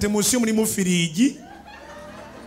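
A man's voice through a microphone, with held notes that glide in pitch, breaking off just over a second in.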